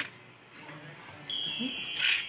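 Background music between tracks: one song ends and there is a short low gap with a faint click. Then, about two-thirds of the way in, the next track's intro starts with a high tone gliding slowly down.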